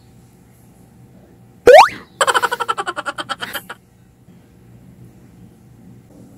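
Cartoon sound effects: a short rising boing-like swoop about two seconds in, then a quick rattling run of pitched notes for about a second and a half, dropping slightly in pitch.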